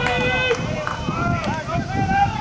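Voices calling out across a ballfield: one held shout at the start, then several wavering, drawn-out calls, over a low steady background rumble.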